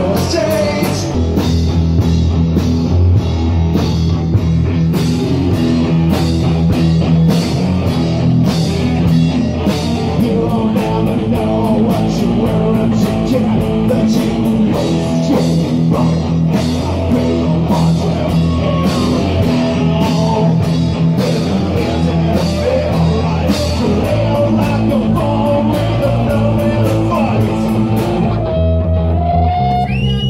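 Punk rock band playing live: electric guitars, bass guitar and a drum kit keeping a steady beat, with a voice singing. The drums drop out near the end, leaving guitar and bass.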